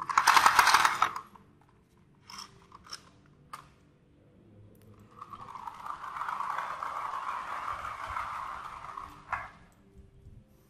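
Battery-powered plastic walking rooster toy's motor and plastic gears rattling loudly for about a second, a few light clicks, then a steadier gear whirr for about four seconds as it rolls across a tile floor, stopping with a short burst near the end.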